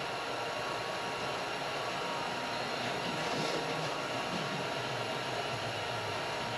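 Steady, even hiss of garage room noise with a faint constant hum, and faint footsteps on a concrete floor.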